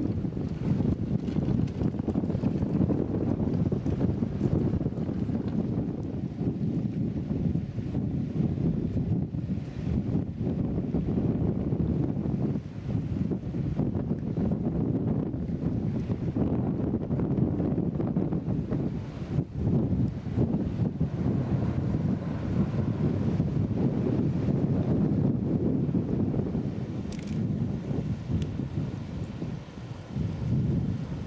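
Wind buffeting the microphone: a dense low rumble that rises and falls unevenly.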